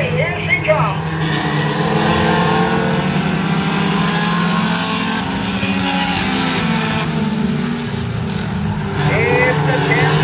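Engines of a pack of pure stock race cars running at speed around a short oval, a steady mixed drone of several cars that dips briefly and swells again near the end.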